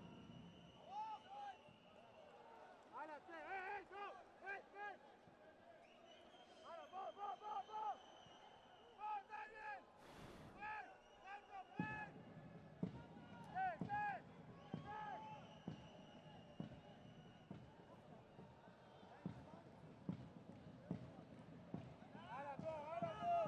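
Scattered short shouts and calls from players on a football pitch, heard across a largely empty stadium. From about twelve seconds in come occasional dull thuds of the ball being kicked, and a brief burst of noise comes about ten seconds in.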